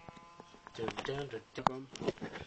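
A guitar chord rings out and fades away over the first half second, then a man's voice takes over.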